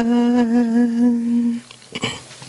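A woman's voice chanting Quranic recitation, holding one long note that wavers in small ornamental turns before breaking off about a second and a half in.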